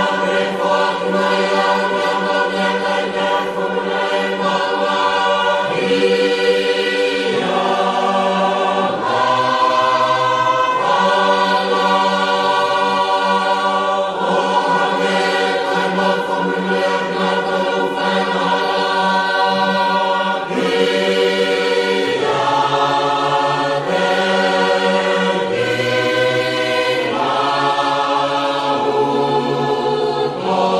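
A choir singing a slow hymn in Tongan in held chords, the harmony changing every second or two.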